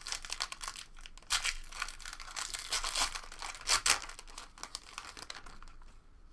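Foil wrapper of a Panini Chronicles basketball card pack being torn open and crinkled by hand: a dense crackle, with the loudest rips about a second and a half in and just before four seconds, dying down near the end.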